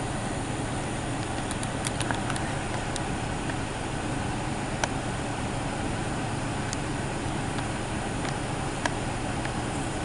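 Steady low background rumble with a few faint, sharp clicks scattered through it.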